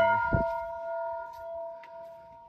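Hanging brass bell ringing on after a single strike, its tones slowly dying away. A soft low thump sounds about a third of a second in.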